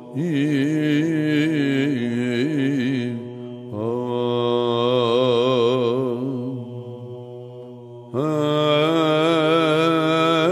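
A male chanter sings Byzantine chant in the plagal fourth mode: a slow, melismatic line with ornamented, wavering pitch. It breaks briefly about a third of the way in, fades away, then starts a new phrase about eight seconds in.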